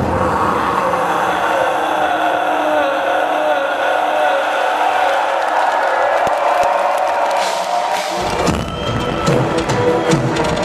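Live symphonic black metal concert heard from the audience: a passage with the drums and bass dropped out, leaving orchestral keyboard sound over a cheering crowd. The full band crashes back in about eight seconds in.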